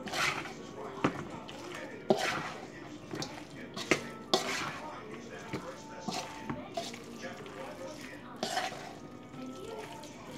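A spoon stirring chunky potato salad in a stainless steel mixing bowl: irregular wet scraping strokes, with a few sharp clinks of the spoon against the metal bowl.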